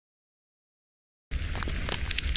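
Dead silence, then a little over a second in a crackling magic-energy sound effect starts suddenly: a dense hiss studded with sharp crackles.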